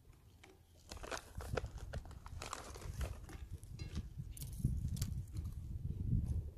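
MRE crackers being broken and chewed: a dense run of sharp, dry crunches starting about a second in, over a low rumble of wind on the microphone.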